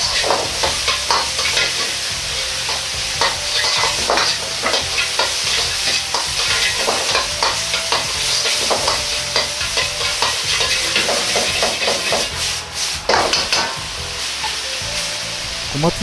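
Crumbled tofu mince sizzling in hot oil in a wok, with a metal wok ladle scraping and knocking against the wok over and over as it is stir-fried to cook off the water left in the tofu.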